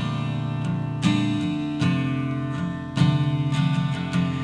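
Taylor acoustic guitar strummed unaccompanied between vocal lines, a fresh chord ringing out every second or so.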